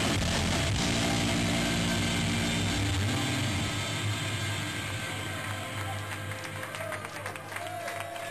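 Live shoegaze rock band holding a loud final chord with distorted electric guitars and bass. About three seconds in the bass cuts out, and the guitar noise rings on and slowly fades as the song ends.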